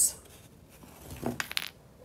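Small wooden blocks knocked over by a rolling tennis ball, clattering onto a hard tiled floor: a quick cluster of clicks about a second and a half in.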